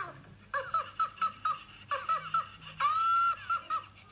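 Tickle Me Elmo plush toy's electronic voice laughing in a run of short, high-pitched 'ha' bursts, with one longer held laugh about three seconds in.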